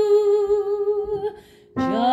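A soprano voice holds a long sung note with slight vibrato that fades out about a second and a half in. After a short gap, a new note starts near the end, sliding up into pitch.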